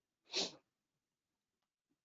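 A single short, breathy burst from a person, about a quarter second in, followed by near silence.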